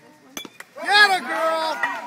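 A couple of sharp clinks, then high-pitched voices calling out loudly, loudest about a second in.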